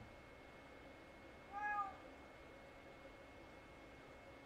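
A house cat meowing once: one short call that rises and falls in pitch, about a second and a half in.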